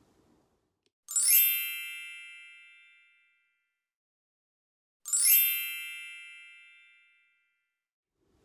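A bright, sparkly chime sound effect added in editing: a quick rising shimmer that rings out and fades over about two seconds. It plays twice, about four seconds apart.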